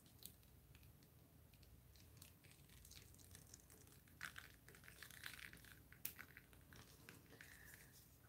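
Near silence with faint handling noise: scattered light crinkles and small clicks as a resin-coated wood panel is tilted in gloved hands over plastic sheeting.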